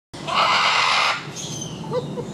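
A harsh animal screech lasting about a second, followed by quieter background sounds.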